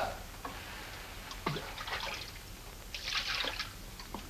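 Water splashing and dripping in a barrel as a drink is scooped out of it: a few small splashes, then a longer splash about three seconds in.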